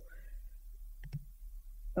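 A quiet pause with a couple of faint clicks about halfway through, over a steady low electrical hum.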